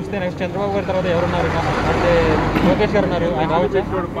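A heavy lorry driving past close by. Its engine and tyre noise builds to its loudest about two seconds in, then fades.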